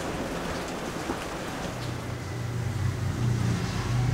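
A steady low hum of a running engine coming in about halfway through and growing louder, over a background hiss.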